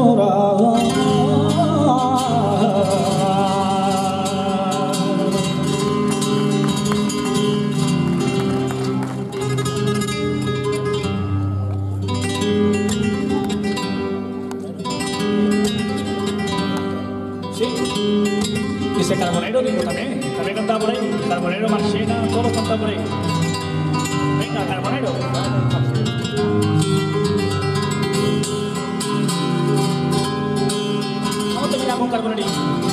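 Flamenco cante singing a fandango with a wavering, ornamented voice over flamenco guitar accompaniment. The voice drops out for a stretch of guitar alone from around the middle, then returns.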